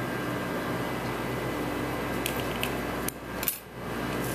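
Small steel scissors snipping excess cotton stuffing, a few soft clicks a little over two seconds in, then a sharp metallic clack near the end as the scissors are set down on a wooden bench, over a steady room hum.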